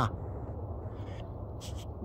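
A person's short, falling "huh" of wonder right at the start, followed by a steady low background hum with a few faint handling ticks.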